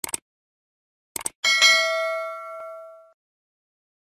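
Subscribe-button sound effect: two quick mouse clicks, two more about a second in, then a bright notification-bell ding that rings out for about a second and a half.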